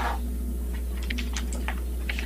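Scattered light clicks and taps, irregular and close together, over a steady low electrical hum in a quiet room.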